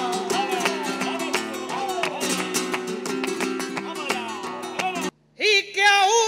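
Flamenco guitar playing with palmas, hands clapping a steady beat. About five seconds in, it cuts off abruptly. After a brief silence a man's voice starts singing with strong vibrato.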